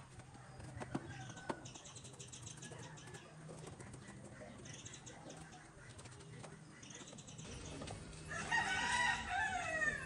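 A rooster crowing once near the end, a long call that falls in pitch at its close. Before it come softer chicken calls and a couple of light knocks.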